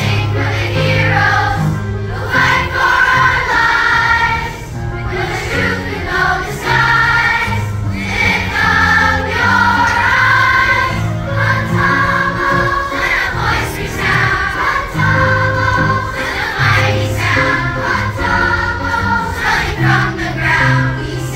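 A large children's choir singing a song together over a low accompaniment, the voices continuing without a break.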